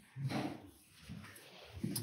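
A pause in a man's speech: a short, low vocal sound a fraction of a second in, then quiet room tone, with his speech starting again near the end.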